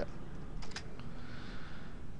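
Computer keyboard keys being pressed: a few light clicks about half a second to a second in, as a closing parenthesis is typed into a spreadsheet formula.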